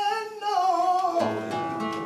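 A flamenco cantaor singing a fandango in a wavering, ornamented line, accompanied by flamenco guitar, with a strummed chord about halfway through.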